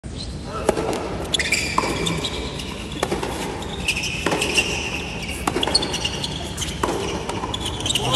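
A tennis serve and rally on an indoor hard court: about six sharp racket-on-ball hits roughly a second apart. Between the hits, shoes squeak on the court surface.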